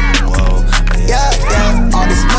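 Hip hop track with heavy steady bass, a regular drum beat and vocals, laid over the footage.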